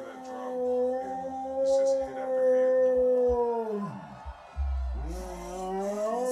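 Dog howling: one long, steady howl that falls away about four seconds in, then a second howl rising up a second later.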